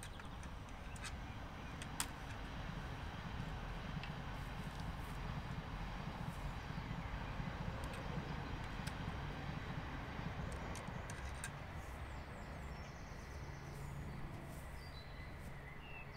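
Faint outdoor background: a low, even rumble that swells gently through the middle and fades again, with a few faint ticks and knocks.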